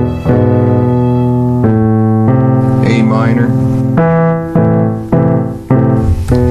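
Yamaha P-105 digital piano playing slow, sustained chords that change every second or so.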